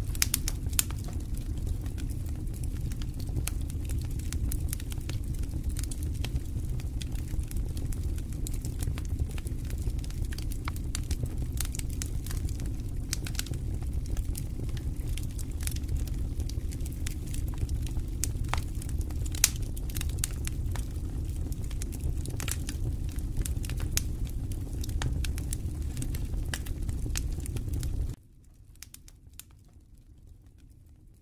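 Wooden spoon stirring and scraping dry maize flour being toasted in an aluminium pan, with scattered crackles and clicks over a steady low rumble. The sound cuts off suddenly near the end.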